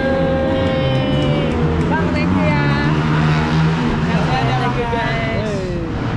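A man singing a long drawn-out note that falls away about a second and a half in, then more sung phrases and a long downward slide near the end, over a strummed acoustic guitar.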